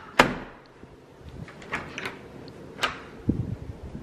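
An interior door's lever handle and latch clicking sharply as the door is opened, followed by a few lighter clicks and a soft knock.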